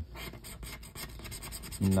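A paper scratch-off lottery ticket sliding and rubbing under a hand on a table: a dry, scratchy rustle with many small ticks.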